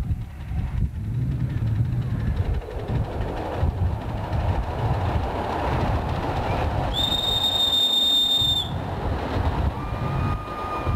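Miniature tank locomotive and its passenger cars running over the rails with a steady rumble and uneven clatter. About seven seconds in the locomotive gives one high, steady whistle of under two seconds, and a lower whistle note starts just at the end.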